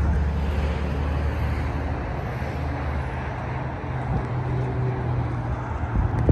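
Low, steady motor-vehicle hum over outdoor traffic noise; the hum steps up in pitch about halfway through.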